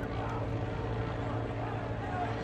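Helicopter circling overhead, a steady low rotor hum with faint voices beneath it.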